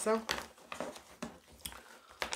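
Tarot cards being handled on a table: a scattering of soft snaps and rustles, irregularly spaced.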